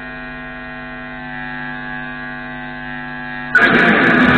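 Steady electrical mains hum and buzz from an amplified guitar setup while the playing pauses. About three and a half seconds in, loud guitar strumming starts again suddenly.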